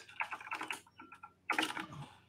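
Typing on a computer keyboard: a quick run of key clicks, a short lull about halfway, then another run of clicks near the end.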